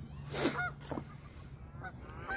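A few short goose honks, with a brief rush of noise about half a second in.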